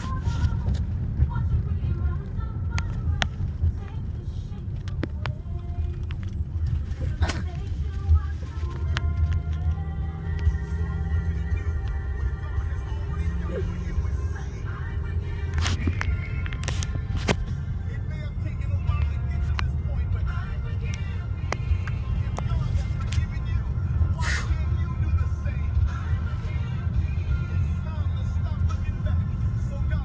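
Steady low road rumble of a moving car heard from inside the cabin, with music playing over it.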